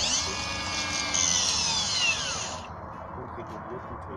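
Cordless multivolt grinder-type tool fitted with a bracket slot-milling head, its motor and cutter whining and falling in pitch as it spins down, dying out about two and a half seconds in.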